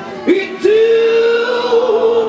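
Live rock band: a male lead vocalist holds one long sung note, after a brief note about a quarter second in, over a steady low accompaniment note.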